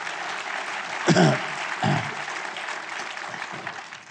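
Audience applauding, dying away near the end.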